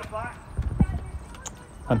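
A few short, sharp knocks at an uneven pace, like running footsteps on stair treads, between bits of voice.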